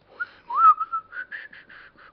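A person whistling: a quick upward slide about half a second in, then a run of short notes at about the same pitch.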